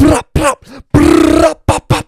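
A man's loud wordless vocal outburst right into a handheld microphone: two short blasts, then one long held cry about a second in, then two quick short ones near the end.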